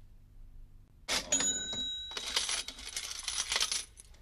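Steel barbell weight plates clanking about a second in, with a brief metallic ring, then rattling for about two seconds.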